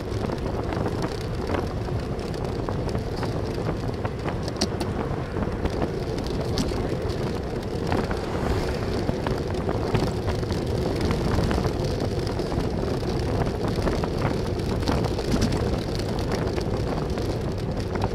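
Steady wind rush and road noise on a bicycle-mounted camera's microphone while riding along a road with traffic, with occasional faint clicks.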